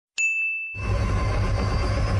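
A single bright ding sound effect that rings and fades within about three-quarters of a second. A steady low background sound comes in under a second in.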